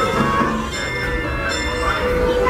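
Steam locomotive bell ringing as the train pulls out of the station, mixed with background music and voices.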